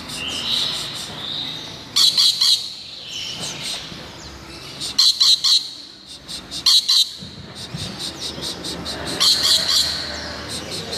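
Rainbow lorikeet calling with shrill, harsh screeches in short rapid bursts, about four bursts a couple of seconds apart, with softer calls between.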